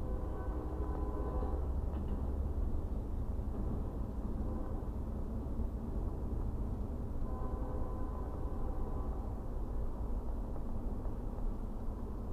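Steady low rumble of a car driving, heard inside the cabin. Faint pitched ringing comes over it during the first couple of seconds and again about seven seconds in.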